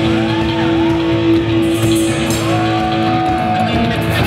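Live rock band playing loudly on electric guitar and bass: a long held note runs under higher notes that slide up and down.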